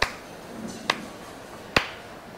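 One person clapping slowly: three single handclaps, a little under a second apart.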